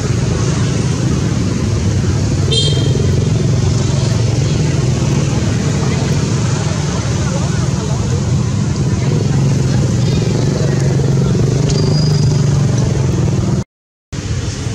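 A steady low engine drone runs throughout, with a short high squeak about two and a half seconds in and a brief high chirp near the end. The sound cuts out for a moment just before the end.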